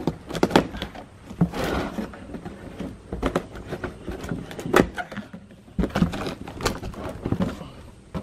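Cardboard shipping box being opened and handled: irregular scrapes, rustles and sharp knocks as the packaging is pulled about and a boxed caster board is slid out.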